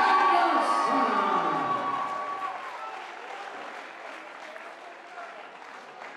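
Crowd applauding and cheering with shouting voices, the shouts dying away after about two seconds and the applause fading out gradually.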